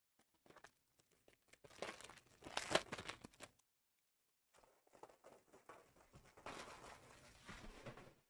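Foil trading-card pack wrappers being torn open and crinkled in two spells, the first loudest about three seconds in, the second running from about halfway to the end.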